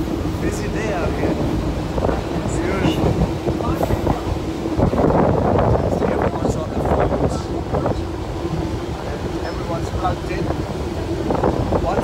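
Mumbai suburban electric commuter train running, heard from inside a crowded carriage: a continuous rumble with a steady hum, scattered clicks, and passengers' voices over it.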